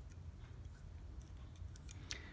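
Faint light clicks and taps of a hobby knife blade and small plastic chassis parts being handled, a few of them in the second half, over a low steady room hum.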